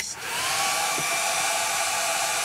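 A handheld hair dryer switching on and blowing steadily to dry wet acrylic paint, its motor whine rising briefly as it comes up to speed, then holding level under a steady rush of air.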